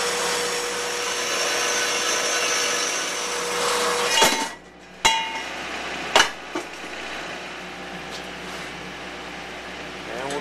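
A horizontal metal-cutting bandsaw runs with a steady hum, its blade cutting through steel tubing. About four seconds in, the sound stops with a sharp metallic clank. Two more sharp metal knocks follow.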